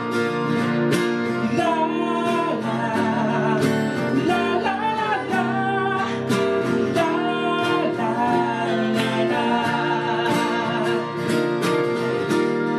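Two male voices singing a song to a strummed nylon-string classical guitar and a steel-string acoustic guitar, played live.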